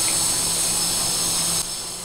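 Masala paste sizzling and bubbling in hot oil in a steel wok, a steady hiss over a faint low hum, which drops abruptly quieter about a second and a half in.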